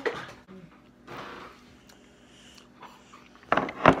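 A short, breathy rush of air from a person about a second in, then a man's voice starting near the end.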